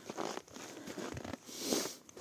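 Snow being scraped and shovelled: a few crunchy scrapes, the longest and loudest near the end.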